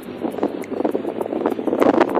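Wind rushing over the phone's microphone, uneven and crackling.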